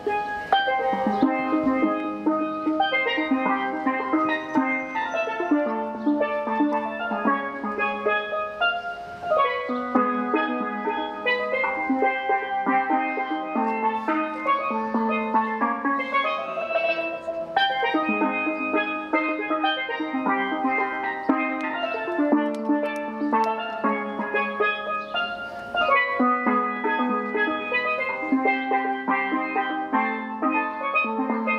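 A pair of steel pans played solo with mallets, a fast, continuous stream of ringing pitched notes with chords and runs overlapping.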